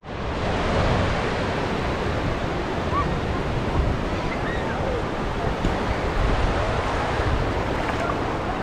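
Shallow sea waves breaking and washing over a sandy shore in a steady rush, with wind buffeting the microphone.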